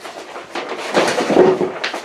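Rustling and rubbing of something being shifted by hand, starting about half a second in and loudest in the second half.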